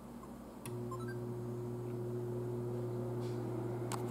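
June smart oven starting a convection bake: a click and a short rising chime as it starts, then its convection fan running with a steady low hum. A sharp click comes near the end.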